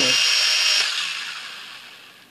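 Syma X5C-1 quadcopter's small electric motors and propellers whining at a steady pitch, then cut just under a second in and winding down to a stop. One of its four propellers does not turn, a fault the owner puts down to a bad connection or a faulty motor.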